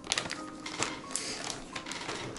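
Irregular series of light clicks and clatter from kitchen items being handled on a table, over soft background music.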